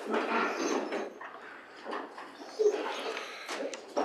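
Quiet room sound in a council chamber: indistinct voices and shuffling, with a couple of short knocks near the end at the lectern microphone.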